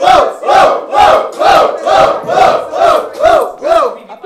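A small group of men shouting a rhythmic hype chant together, about two loud shouts a second, each shout rising and falling in pitch.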